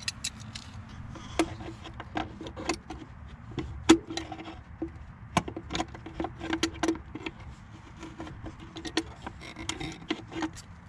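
Slip-joint pliers clicking and scraping on a PCV valve as it is twisted back into the valve cover of a Ford 4.6L V8: irregular sharp clicks, with short squeaks in between.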